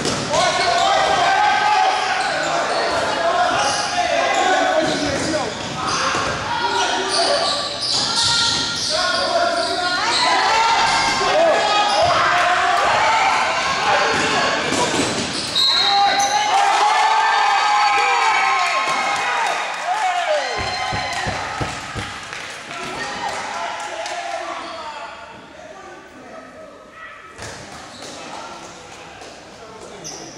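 Basketball game in a gym: many voices of players and spectators shouting and calling over each other, with the basketball bouncing on the court floor. The shouting dies down over the last few seconds.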